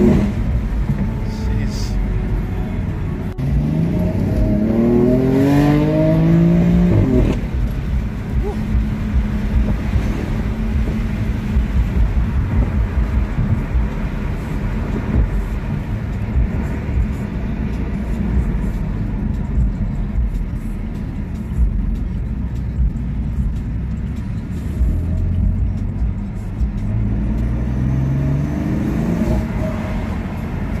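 Car engine heard from inside the cabin, accelerating with a rising note that drops sharply at a gear change about seven seconds in, then cruising with a steady low drone and road rumble. The engine note climbs again near the end.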